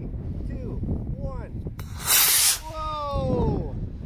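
Model rocket motor igniting and lifting the rocket off its launch pad: a short, loud hiss lasting about half a second, about two seconds in.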